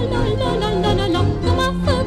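Romanian folk song: a woman's voice sings a richly ornamented, wavering melody over a folk orchestra with a steady pulsing bass accompaniment.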